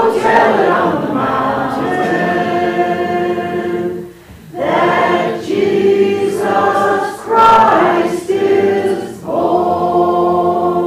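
Church congregation singing a hymn together, long held notes in phrases, with brief breaks for breath about four and nine seconds in.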